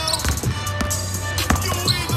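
Music with a vocal line and a bass-heavy beat, with basketballs being dribbled on a hardwood gym floor, several quick bounces.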